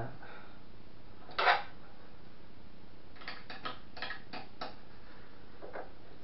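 Light metallic clicks and clinks from hand-assembling a 3D printer's metal frame: one sharper knock about a second and a half in, then a quick run of six or so light clicks in the middle, and one more near the end.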